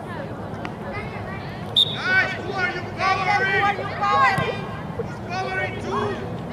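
Children's voices shouting and calling out across a soccer field, over a steady low background hum, with a short high-pitched note about two seconds in.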